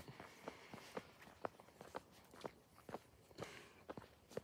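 Faint footsteps of a person walking on pavement at a steady pace, about two steps a second.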